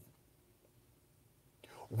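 A short pause in a man's talk: faint steady hiss, and a soft intake of breath near the end as he starts to speak again.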